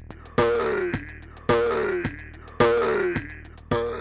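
Electronic loop from a Reaktor 6 Blocks patch clocked at 108 BPM: a ticking drum-machine pattern with a heavier hit about every second, each followed by a sampled sound that slides down in pitch.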